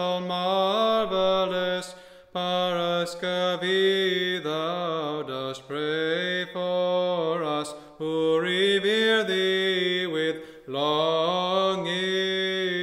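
Orthodox church chant: a male voice singing long, melismatic held notes that bend in pitch, in four phrases with brief breaths between them.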